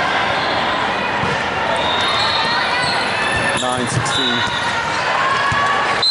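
Reverberant babble of many voices in a large sports hall, with scattered thuds of balls hitting the hard floor and one sharper thump about four seconds in.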